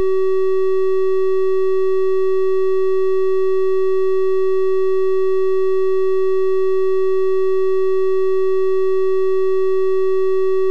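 A synthesized 380 Hz triangle-wave test tone, loud and perfectly steady. It is a single unwavering pitch with faint, thin overtones above it.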